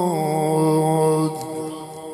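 A man's voice chanting Arabic recitation through a microphone and loudspeakers, holding one long note that dips slightly in pitch and then stops about a second in, its echo fading after it.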